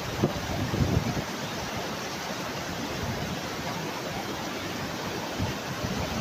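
River water rushing steadily over a weir crest into white water below, an even, continuous rush.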